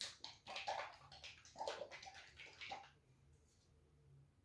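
Faint handling of a plastic squeeze bottle of acrylic paint: a quick run of rustles and squelchy, liquid-sounding noises that stops about three seconds in.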